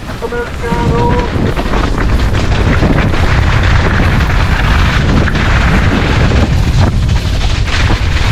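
Wind buffeting the microphone over the rolling noise of a mountain bike's tyres on snow and stones, a loud, steady rumble while riding.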